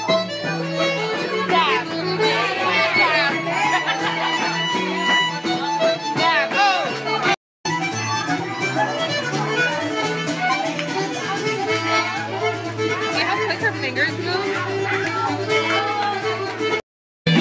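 Live traditional Irish session music: a button accordion playing a tune, over the chatter of a pub crowd. The sound cuts out briefly about seven seconds in, then the playing carries on.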